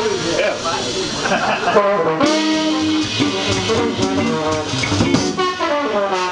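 Live jazz combo: a trombone solos over electric guitar, upright bass and drum kit, running through quick notes and holding one note for about a second partway through.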